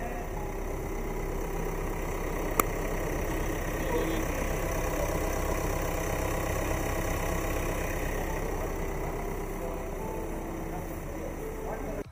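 Hyundai Creta's 1.6 CRDi four-cylinder turbo-diesel idling steadily, heard with the bonnet open. There is a single sharp click about two and a half seconds in.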